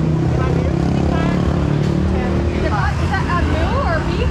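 A motor vehicle engine running steadily at a low pitch, fading out about two-thirds of the way through as voices come in over it.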